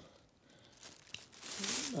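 Thin plastic bag crinkling and rustling as a hand rummages through loose LEGO inside it, starting faintly about a second in and growing louder toward the end.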